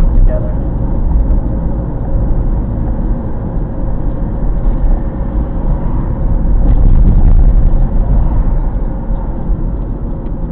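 Steady low rumble of a car's engine and tyres on the road while driving, heard inside the cabin; it grows louder for a few seconds in the second half.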